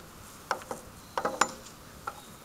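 Playground swing's chains and hanger hooks creaking and clinking under a swinging rider, a few short metallic creaks and clicks in the first second and a half.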